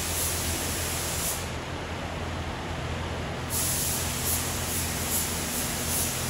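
Compressed-air paint spray gun laying down a coat of clear: a steady hiss of air and atomised paint. The high part of the hiss drops away for about two seconds in the middle, over a steady low hum.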